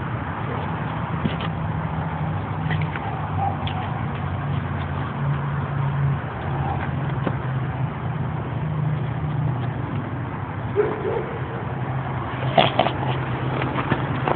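A steady low motor hum over a noisy background wash, with its pitch shifting slightly now and then. A short laugh comes about eleven seconds in.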